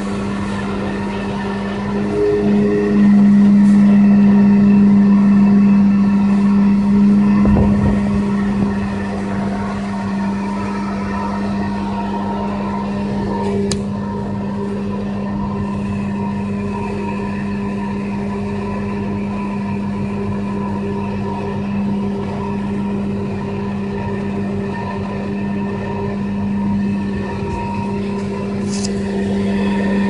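Pressure washer running with a steady, constant hum, louder for several seconds a few seconds in.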